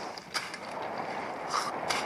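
Bicycle rolling along a dirt path: steady tyre and wind noise, with three short rattles from the bike, one about a third of a second in and two near the end.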